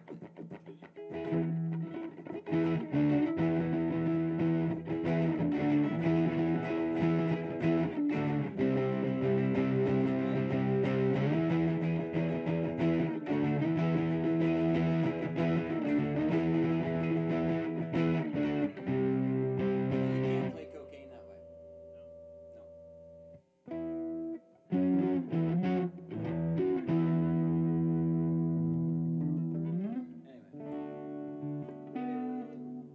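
Amplified electric guitar playing a repeating chordal riff. About two-thirds through, the playing stops and a held note lingers for a few seconds. After a brief gap the playing starts again near the end.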